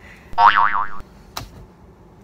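A short cartoon-style boing sound effect: a high-pitched tone whose pitch wobbles rapidly up and down about five times in half a second, followed about a second in by a single sharp click.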